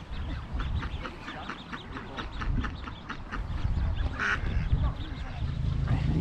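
A mother duck and her ducklings calling: short calls repeated several times a second.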